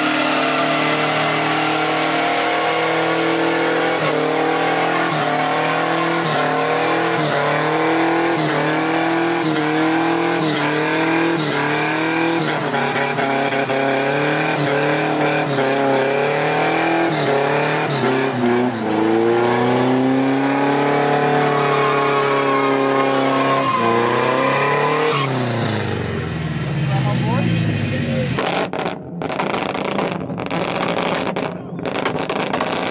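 A car engine held at high revs while its tires spin in a smoky burnout, the revs surging up and down over and over. Near the end the revs fall away in one long drop and the engine quietens.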